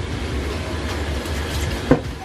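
Warm tap water running steadily from a kitchen mixer tap onto soaked textured soy granules in a plastic colander over a stainless-steel sink. A brief sharp sound comes near the end.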